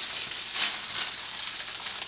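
Clear plastic bag rustling and crinkling steadily as it is handled.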